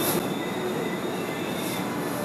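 Steady background hum and hiss of a small grocery store, with faint steady tones, typical of refrigerated drinks coolers and chest freezers running.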